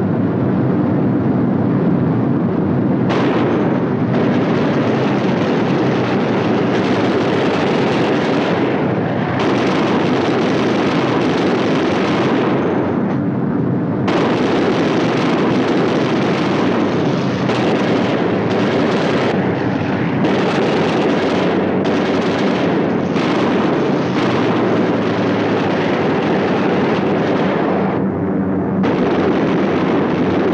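Loud, continuous din of B-17 Flying Fortress engines in air combat, with repeated spells of gunfire and explosions that start and stop every few seconds.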